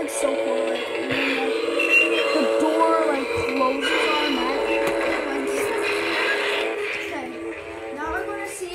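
A Halloween animatronic prop playing its soundtrack through its small built-in speaker: music with an electronically processed voice, thin with no deep bass.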